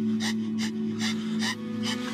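Short, rapid gasping breaths, about three a second, of a shot and dying girl, over a steady low drone of dramatic film score.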